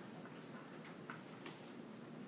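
Quiet room tone with a low steady hum and a few faint, unevenly spaced clicks.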